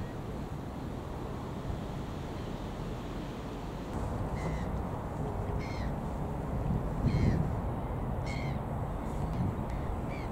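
Gulls calling: about five short, falling calls about a second apart, starting about four seconds in, over a steady low background rumble. A brief louder low rush comes about seven seconds in.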